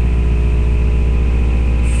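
A steady, loud low hum with a buzzy, engine-like drone that does not change.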